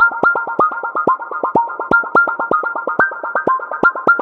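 Electronic dance music in a breakdown: a rapid synthesizer arpeggio of short plucked notes, about five or six a second, with no drums or bass under it.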